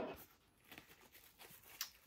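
Faint clicks and rustling of hands fiddling with a doll's miniature umbrella, with one slightly louder click near the end.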